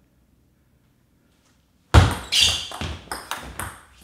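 Near silence, then about halfway in a table tennis ball is served and played: a quick run of sharp clicks as the ball is struck by the bats and bounces on the table. The serve is a side-topspin serve.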